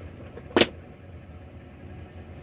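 A single sharp click about half a second in, with a few faint ticks just before it, from small plastic objects being handled, such as the headset case and phone; a steady low hum of the truck cab runs underneath.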